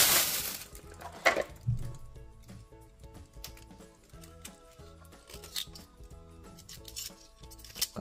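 Soft background music, with a few light clicks of a paring knife against Manila clam shells as they are pried open. A brief rush of noise at the very start.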